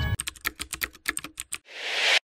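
Animation sound effect of a computer keyboard being typed on: a quick run of about a dozen clicks, then a rising whoosh that cuts off suddenly.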